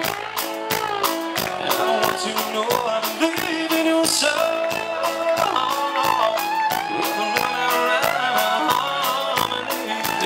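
Live country-rock band playing an upbeat song: a drum kit keeping a steady quick beat under electric guitar and bass guitar.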